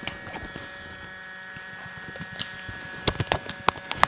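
Electronic paintball hopper whining steadily as its feed motor spins with no paint left to feed: the loader is out of ammo. A quick run of sharp cracks comes near the end.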